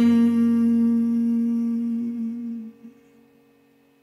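The song's closing note: a man's voice holds one steady final note over the ringing acoustic guitar. The note stops about two and a half seconds in, leaving near silence.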